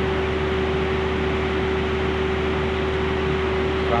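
Palm oil mill machinery running steadily: the cracked-mixture bucket elevator for nuts and shells and its conveyor, with a constant hum over an even mechanical rush.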